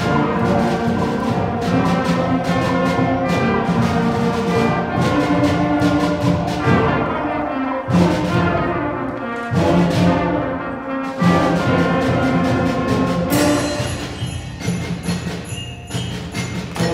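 A school concert band playing: tubas, trumpets and clarinets hold chords over regular percussion strikes. The sound thins out briefly twice around the middle before the full band comes back in.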